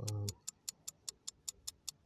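Ticking timer sound effect, fast, even ticks at about six a second, with a brief hesitant 'uh' from a man's voice at the start.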